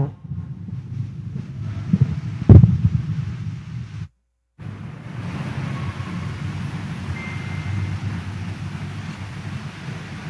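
Low, steady rumbling noise like wind on a microphone, with a single loud thump about two and a half seconds in. Near the middle the sound cuts out completely for half a second, then the rumble comes back.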